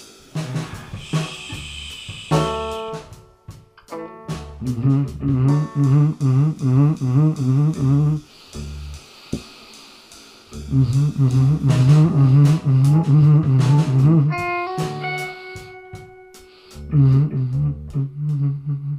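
Live rock band playing an instrumental passage: drum kit with snare and cymbals, bass and guitar, and a harmonica wailing over the top. The full band thins out for a moment a few times.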